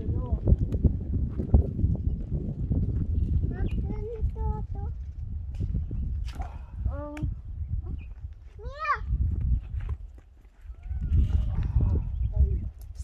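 Goats bleating several times, short calls that rise and fall in pitch, over a continuous low rumble with scattered knocks.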